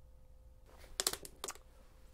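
A few short, sharp clicks with a little soft rustling about a second in, over faint room tone.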